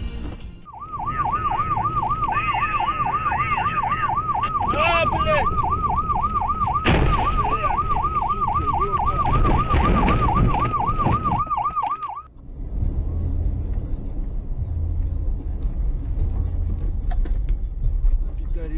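Electronic siren in a fast yelp, its pitch sweeping up and down about four times a second for around eleven seconds, with a louder rush of noise about seven seconds in. It cuts off suddenly and gives way to the low, steady rumble of a vehicle driving.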